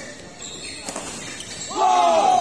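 Badminton rally in a large echoing hall: a racket strikes the shuttlecock about a second in, then a person gives a loud shout near the end.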